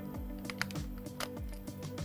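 Background music with a steady beat, with a few small, sharp clicks as an EF-M lens is seated and turned on a Canon EOS M6's metal bayonet mount.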